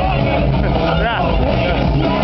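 Loud club music with crowd voices shouting over it. One voice rises and falls about a second in.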